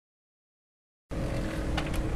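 Silence for about the first second, then wind buffeting the microphone in a steady low rumble, with a faint steady ringing tone.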